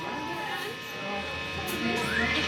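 Steady electrical hum and buzz from live guitar amplifiers idling on stage, with faint voices in the room.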